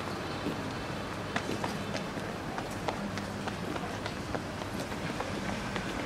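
Quick, irregular footsteps on a city pavement, a few steps a second, over a steady low street hum.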